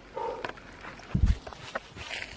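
A dull low thump about a second in, among light crackles and rustles of dry leaves and twigs underfoot.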